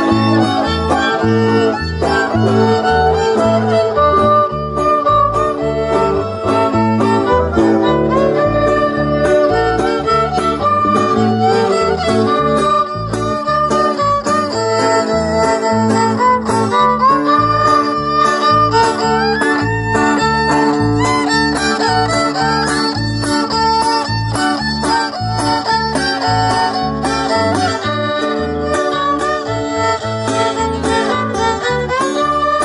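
String-band dance music: a fiddle melody over guitar, with a steady, evenly repeating bass beat.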